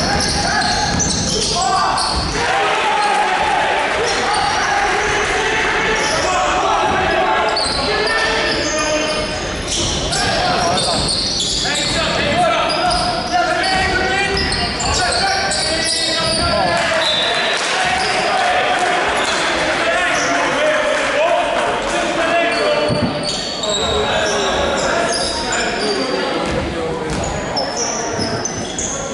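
Basketball being dribbled on a wooden court in a large, echoing sports hall, with players and spectators calling out throughout.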